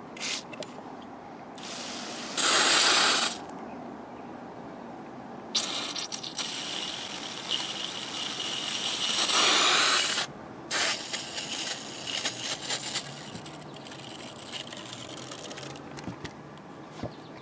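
Fine spray of water hissing onto potting soil and seedlings: a short burst, then a longer one of about five seconds, followed by scattered drips and patter.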